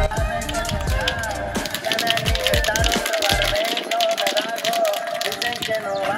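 Background music: a wavering sung or lead melody over fast ticking percussion, with deep bass that drops away about halfway through.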